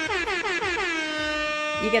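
DJ air horn sound effect: one long blast that slides down in pitch at first, then holds a steady note.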